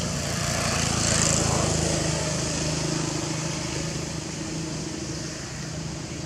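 A small engine running steadily, growing louder about a second in and then slowly fading.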